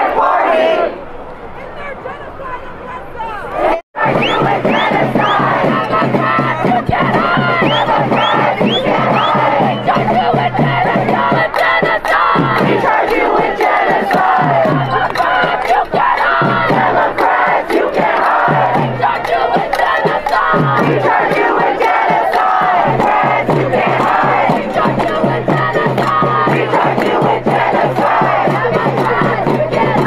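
A large crowd of protesters shouting and yelling together, loud and continuous. About four seconds in there is an abrupt break, and from then on a steady low hum runs beneath the crowd.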